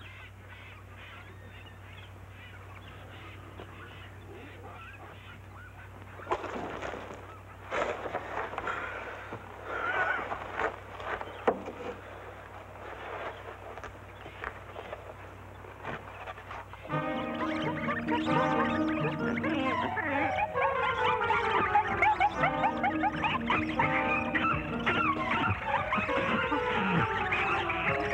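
Old film soundtrack with a steady low hum. From about six seconds in come scattered, irregular animal-like calls, and at about seventeen seconds score music comes in loudly, with sustained notes and falling runs, and carries on to the end.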